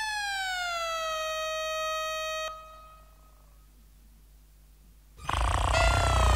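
Synclavier synthesizer music: a held tone with many overtones that slides down in pitch over about a second, holds, and cuts off suddenly about two and a half seconds in. After a quiet gap, a louder noisy burst with a deep rumble and another falling tone comes in near the end.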